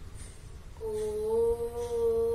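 A boy chanting a long, steady 'Om' as a single held note, starting about a second in.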